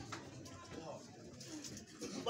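A pause in a man's speech: faint, low voice sounds between louder phrases.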